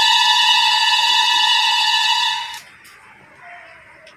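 A loud, steady electronic beep tone held for about two and a half seconds, then cutting off suddenly.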